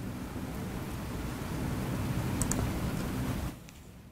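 A few quiet keystrokes and a click on a laptop keyboard as the code is edited and run. Under them is a steady rustling noise that cuts off suddenly shortly before the end.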